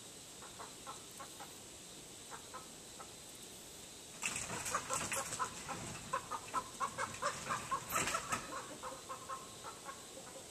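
Chickens clucking: a few faint clucks in the first three seconds, then from about four seconds in a louder, rapid run of short clucks, several a second, over a rush of noise.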